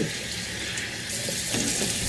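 Water running steadily from a bathroom tap into a sink as face scrub is rinsed off.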